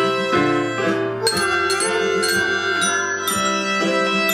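A small children's ensemble playing a simple march tune: a digital piano and two violins hold the melody in sustained notes, while glockenspiel bars are struck along with it, ringing brightly on the beats.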